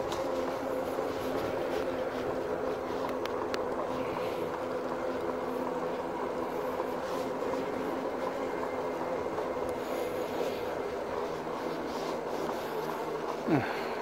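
Rad Power RadMini electric fat-tire folding bike rolling at a slow, even pace on asphalt: a steady hum from the rear hub motor and fat tyres over the rushing noise of the ride.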